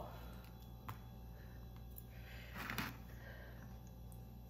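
Faint handling of a soaked biscuit and a glass dessert bowl: a light click about a second in and a soft brief scrape a little before three seconds, over quiet room tone with a low steady hum.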